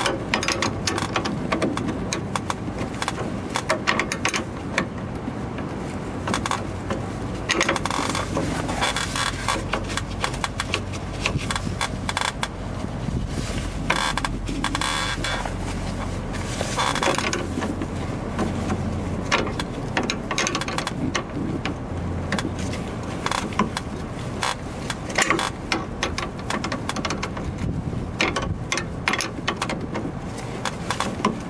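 Pliers clinking and scraping on metal: irregular small metallic clicks and scrapes as they work at a brake hose's retaining clip on its steel bracket, with louder scraping spells now and then.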